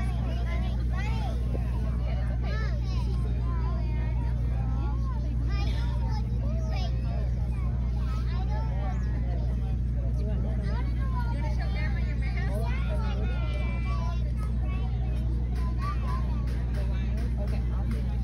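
Background voices of several people talking, with a steady low hum underneath.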